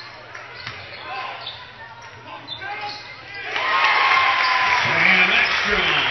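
Basketball game sounds in a gymnasium: a ball bouncing on the hardwood court under crowd voices. About three and a half seconds in, the crowd gets suddenly loud, cheering and shouting.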